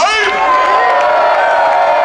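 A live festival crowd cheering while one voice slides up and holds a single long, high note.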